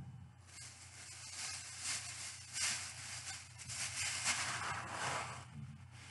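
Shopping bags rustling and crinkling on and off as someone rummages through them. It starts about half a second in and dies down shortly before the end.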